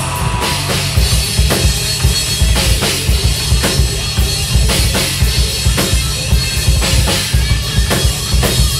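Live rock band playing an instrumental passage: electric bass and electric guitar over a drum kit with a steady kick and snare beat.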